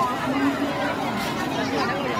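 Several people talking at once: overlapping chatter of voices.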